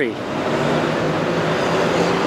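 Steady motor traffic noise, with a low, even engine hum running underneath.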